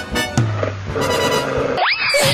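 Cartoon fight sound effects over background music: a sudden hit with a low held tone about half a second in, then a fast rising whistle-like glide near the end.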